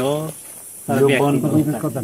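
Men talking, one voice after another, with a short pause of faint hiss just under a second long near the start.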